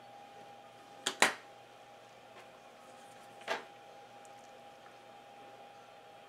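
A few sharp clicks, two close together about a second in and a weaker one past the middle, from a thin blade and fingers working the PVC jacket of an Ethernet cable as it is lightly scored for stripping. A faint steady hum sits underneath.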